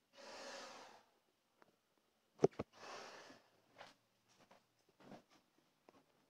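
Breathing through a respirator: two long breaths about two seconds apart, with a pair of sharp clicks just before the second and a few faint handling ticks afterwards.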